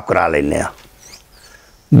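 A man's voice drawing out a single word in Punjabi, then a short pause in which a few faint high squeaks are heard.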